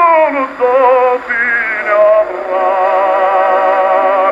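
A 1909 acoustic 78 rpm record of a tenor with orchestra playing on an EMG Mk Xb horn gramophone with a bamboo needle. A held note with vibrato slides down at the start and gives way to a string of shorter notes.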